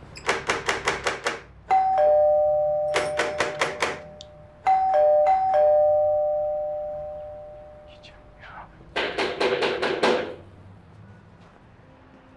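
Someone knocking rapidly on a door in three quick bursts. Between the bursts a two-note ding-dong doorbell is rung three times, the last chime ringing out slowly.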